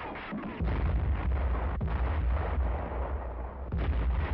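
Battle sound of gunfire and artillery: a heavy low rumble with rapid, irregular cracks of shots, growing much louder about half a second in.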